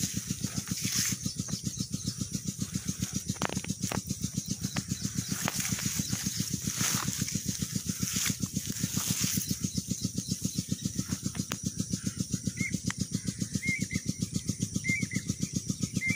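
Muddy irrigation water rushing along an earthen field channel, over the steady, rapid thudding of a single-cylinder Peter diesel engine driving the water pump. A few small chirps come in near the end.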